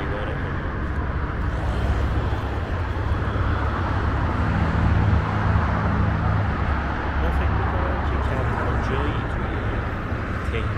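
Steady highway traffic noise, a continuous flow of cars passing below with a low engine and tyre rumble.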